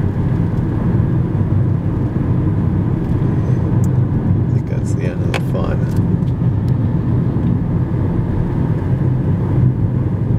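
Steady low road and engine rumble heard from inside a moving car's cabin at highway speed, with a few faint clicks around the middle.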